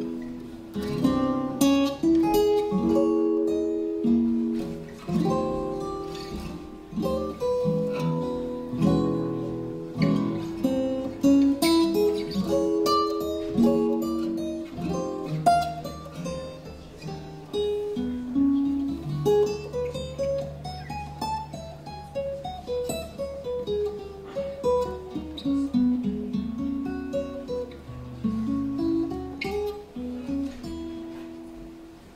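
Two Ken Parker acoustic archtop guitars playing a slow jazz ballad as a duet, chords and single-note lines picked together. About two-thirds of the way through, a held low bass note sounds under a line of notes that climbs and then falls back.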